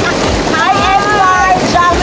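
Mountain river rushing over rocks in a loud, steady roar of white water, with wind buffeting the microphone in low irregular thumps.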